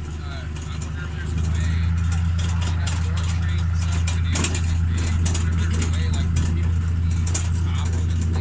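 Tractor engine towing a wagon, a steady low drone that grows louder about a second and a half in and then holds even.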